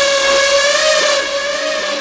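Hardstyle track at a break in the beat: a single synthesizer note held steady with its overtones, with no kick drum under it.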